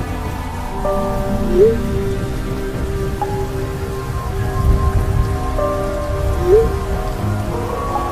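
Steady rain with a low rumble of thunder near the middle, under slow music of long held notes that twice slide up in pitch.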